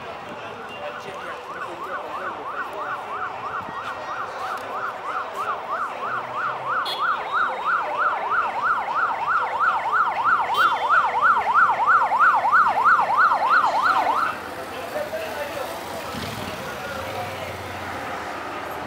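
Police escort siren on the yelp setting: a fast up-and-down wail, about three or four sweeps a second. It grows steadily louder, then cuts off suddenly about fourteen seconds in.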